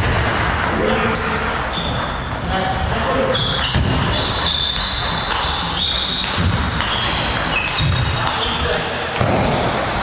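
Table tennis rally: the ball clicking off the rackets and bouncing on the table, in a series of short sharp knocks with hall echo.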